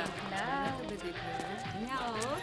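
Film background score: a melodic line of sliding, wavering notes over a light, quick tapping percussion beat.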